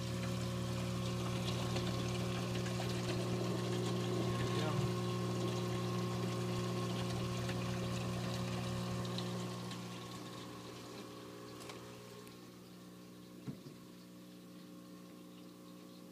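Water pouring from a saltwater aquarium's overflow drain hose into the filter cup of its sump, a steady splashing over the hum of the pump. The splashing fades about ten seconds in, leaving a softer hum.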